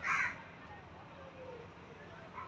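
A bird gives one short, harsh call right at the start, like a crow's caw, against faint background sound.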